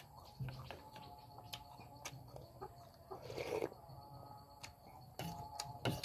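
Chickens clucking faintly in the background, mixed with eating sounds: a metal spoon clicking and scraping in a ceramic bowl of noodle soup, and a short slurp about halfway through.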